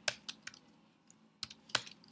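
Typing on a computer keyboard: a few quick keystrokes, a pause of about a second, then another short run of keystrokes.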